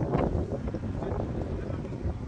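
Wind buffeting the microphone, a gusty, uneven low rumble.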